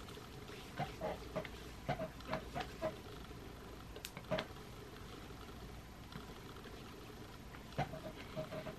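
Quiet room with a few faint, short, soft sounds of hands rubbing and patting sunscreen into facial skin, and one small sharp click about four seconds in.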